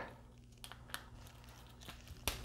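Faint clicks and handling noise from a plastic Transformers action figure as stiff jointed parts are turned by hand, a few small clicks spread across the moment.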